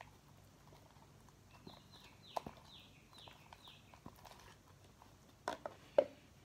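Light clicks and knocks of a metal spoon in a plastic cup as glue and laundry detergent are mixed into slime, the loudest few close together near the end. Behind them, a bird gives a run of faint, quick chirps that fall in pitch, a few a second.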